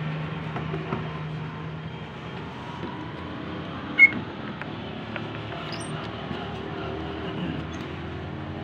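Steady background hum and noise, with one sharp, short click about four seconds in.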